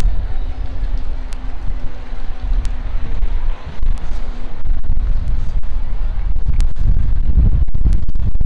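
Wind buffeting a handheld camera's microphone: a loud, steady low rumble that grows heavier in the second half, with faint voices behind it.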